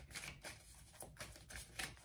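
A deck of tarot cards being shuffled by hand, the cards giving a faint run of irregular soft slaps and ticks.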